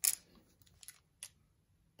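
A sharp metallic click, then three faint clicks over the next second or so, as a metal lens bayonet mount is handled against the lens mount of a Nikon D3 camera body.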